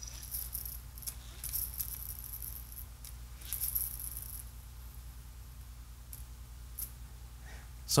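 Hand-squeezed lever mechanism of a WW2 dynamo flashlight with its case off: the gear train and small dynamo spin up in a few short, faint bursts of whirring rattle in the first half, as the lever is squeezed and released.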